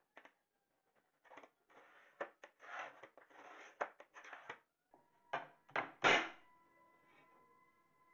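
Hand glass cutter scoring a sheet of glass along a wooden straightedge: a run of short scratchy rasps, then a few sharp cracks a little past the middle, the last one the loudest, as the glass is snapped along the score line.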